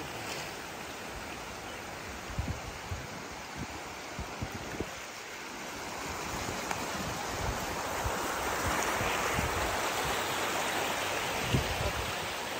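Shallow seawater washing over a rocky shore, a steady wash that grows louder about halfway through, with a few short low thumps.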